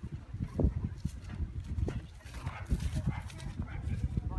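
A horse cantering on grass, its hooves landing as dull, irregular thuds, with a low rumble of wind on the microphone.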